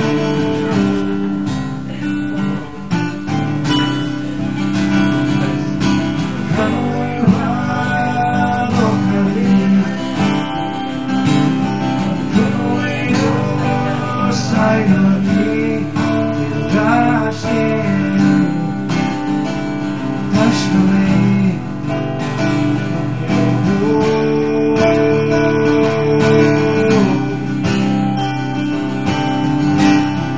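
Two acoustic guitars played together as a live duo: strummed chords with a picked melody line moving over them through the middle of the passage.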